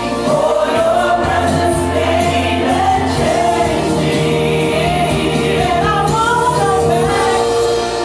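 Women's voices singing a gospel worship song together into microphones, the melody bending and sliding, over sustained backing chords and a low bass line.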